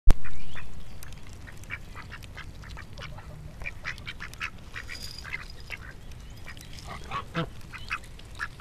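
Domestic ducks foraging, giving many short soft calls, with a fuller quack about seven seconds in. A single loud knock opens the clip.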